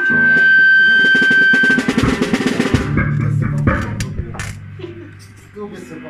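Live rock jam band: a fast drum roll on the kit under a sustained high guitar note, then a low bass note and scattered drum and cymbal hits as the playing thins out.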